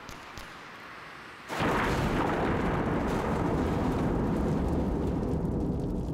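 Faint crackle with a few sharp clicks, then, about a second and a half in, a sudden loud blast that carries on as a steady low rumble.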